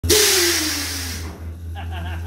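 Air suspension on a 1969 Chevelle being let down: a loud rush of escaping air with a falling whistle, strongest at once and fading away over about a second. A man's voice comes in near the end.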